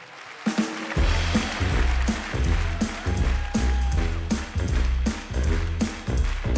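A live band strikes up a swing-jazz arrangement of a pop song. About a second in, a bass line and drums enter with a steady beat.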